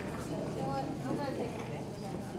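Indistinct voices of people talking quietly in a hall.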